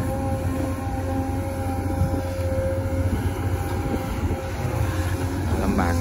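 XCMG XE215C crawler excavator's diesel engine and hydraulics running steadily under load as it digs and lifts a bucket of wet mud: a constant low rumble with a steady whine over it.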